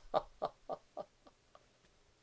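A man's hearty laughter-yoga laugh: a run of 'ha' bursts, about three to four a second, that grow quieter and trail off near the end.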